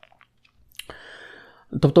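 A man's faint mouth clicks, then a short in-breath lasting under a second, before his speech resumes near the end.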